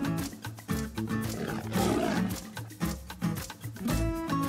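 A lion roar sound effect about a second and a half in, over background music with a steady beat.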